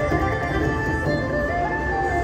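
Video slot machine game music: held electronic tones with a short melody that steps up in pitch near the end, as the free-game bonus round finishes and goes into its total-win display.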